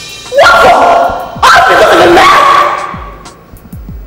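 A woman shouting loudly twice, the first cry rising in pitch and the second falling away, over background music.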